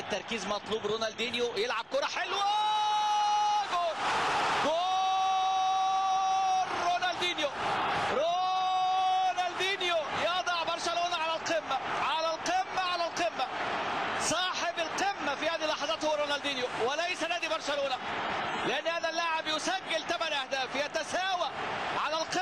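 A football commentator's voice calling a goal: three long, drawn-out cries about two seconds each, then fast excited commentary.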